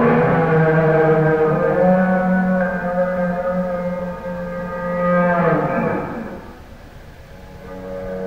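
Electric guitar played with a violin bow: long sustained, drawn-out notes that slide down in pitch about five and a half seconds in, then die away to a brief lull before swelling again at the end.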